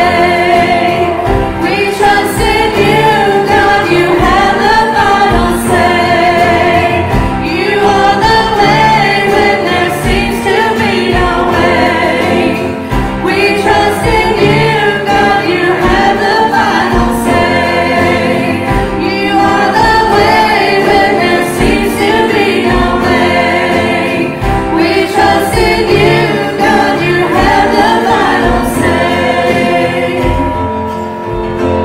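Church worship team of several singers singing a gospel-style Christian song together into microphones, over a band with a steady drum beat.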